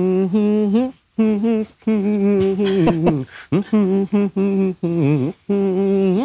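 A man humming a song's melody with his mouth closed, in short phrases of held and sliding notes separated by brief pauses for breath.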